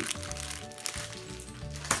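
Background music with the crinkle of plastic packaging as packs of treat sacks are handled and moved, with a sharp crinkle near the end.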